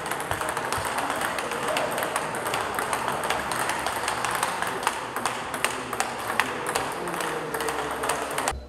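Table tennis rally: a quick, irregular run of sharp clicks as the celluloid ball is struck by rubber-faced paddles and bounces on the table, over steady background hall noise.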